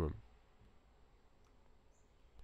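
A man's narrating voice trails off at the start, then near-silent room tone with a faint click or two.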